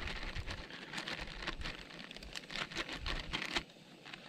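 Clear plastic zip-top bag crinkling and rustling in irregular crackles as it is squeezed and kneaded by hand to mix raw eggs, peppers, onions and cheese inside. The crackling stops a little before the end.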